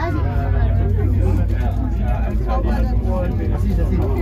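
Several passengers chatting inside a cable car cabin, over the cabin's steady low rumble as it runs down the cable.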